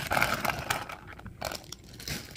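Clear plastic bag of Lego bricks crinkling as it is handled, with a few light clicks of the pieces inside; strongest in the first second, then fainter.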